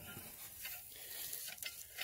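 Faint crackling scratches of a garden fork's metal tines poking into dry pine needles and sandy soil, with a few light clicks.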